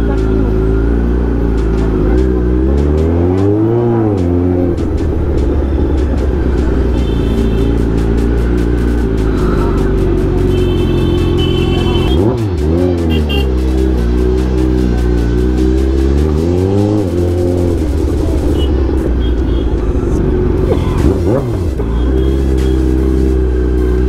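Kawasaki Z900 inline-four engine running at low speed in traffic, with throttle blips that rise and fall in pitch about three seconds in, about twelve seconds in, about sixteen seconds in and once more near the end.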